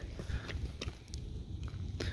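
Low wind rumble on the microphone with a few faint footsteps.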